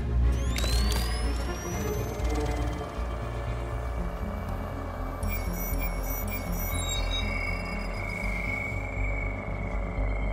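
Dark film score with a steady low drone, under sci-fi electronic sound effects: a rising electronic whine in the first two seconds as the personal drones are activated, then quick high electronic chirps from the head-up display about halfway through, and a thin steady high tone after them.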